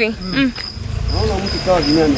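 A cricket chirping: a thin, high-pitched pulse repeating about three times a second, with people talking over it and a low rumble underneath.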